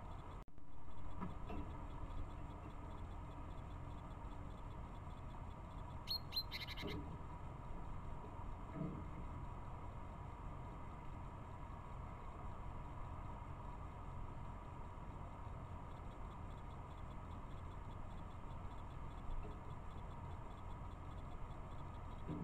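Steady hiss and low hum from a trail camera's microphone, with a brief burst of small-bird chirping about six seconds in.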